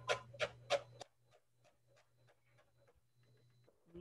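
Chef's knife rough-chopping cilantro leaves on a cutting board: a quick run of sharp taps, about four a second, clear in the first second and then very faint.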